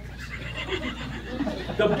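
A person in the comedy club audience laughing quietly during a pause in the routine.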